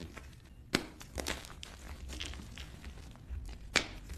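Blocks of gym chalk being crushed and broken apart by hand: dry, crumbly crunching and crackling, with two sharp snaps, one just under a second in and one near the end.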